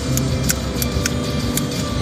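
A pipe lighter clicked several times in quick succession without lighting: it has no fluid in it.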